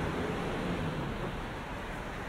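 Busy city street ambience: a steady, dense wash of traffic and crowd noise, with faint voices of passers-by in the first second.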